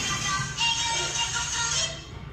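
Background music with a sung vocal line, which stops just before the end.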